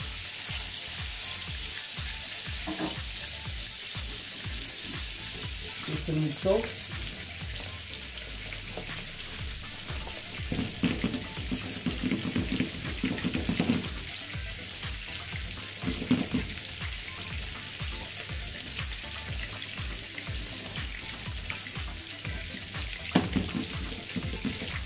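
Salmon fillets sizzling skin-side down in hot oil in a frying pan, a steady crackling hiss throughout. A few short knocks and clatters of cookware being handled come around the middle.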